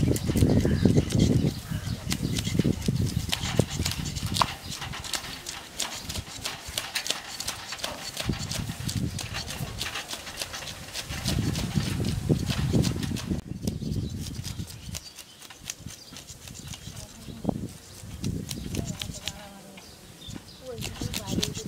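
Rapid rasping strokes of a metal fish scaler scraping the scales off a large fish on a steel plate. Louder low rumbling comes near the start and again about halfway through.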